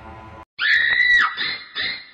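Eerie music cuts off, then a loud, high-pitched shriek holds for most of a second and drops at the end. It is followed by a rhythmic run of short cries, about two or three a second.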